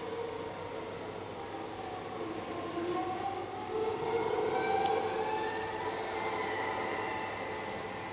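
Live string quartet playing long bowed notes that slide slowly upward in pitch, several tones sounding at once. They swell to their loudest about halfway through, then ease off.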